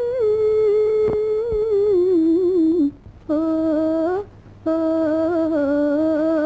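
A female playback singer humming a wordless melody in an old Tamil film love song, the pitch wavering in ornamented turns and drifting lower over the first few seconds. The humming comes in short phrases, with two brief breaks about three and four and a half seconds in.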